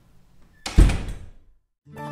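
A door slamming shut once, a single heavy bang with a short decay about two-thirds of a second in. Music starts just before the end.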